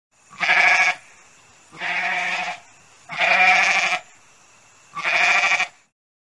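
Domestic goat bleating four times. Each call is under a second long with a quavering pitch, and the calls come about a second and a half apart.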